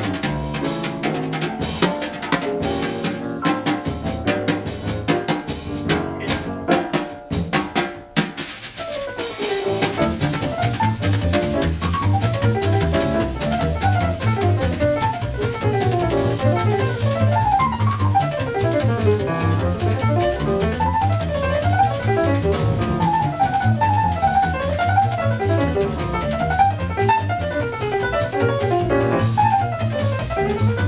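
Jazz piano trio of piano, double bass and drum kit. For about the first eight seconds the drum kit is prominent, with many sharp hits. After a brief dip the piano plays fast runs up and down the keyboard over a steady bass line.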